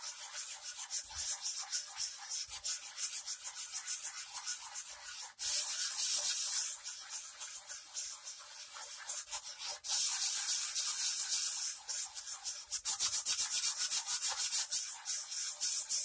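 Sandpaper on a hand block rubbed back and forth over a Squier guitar body's paint and dried body filler: a scratchy hiss of quick strokes. Two longer, louder runs come around the middle, and faster, harder strokes come near the end.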